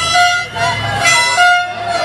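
A horn sounding in short repeated blasts of one steady pitch, about three in two seconds, over crowd voices in a street celebration.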